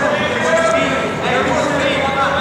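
Several people's voices calling out at once in a gym, with no clear words.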